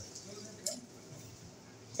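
Quiet room tone with a single faint click about two-thirds of a second in.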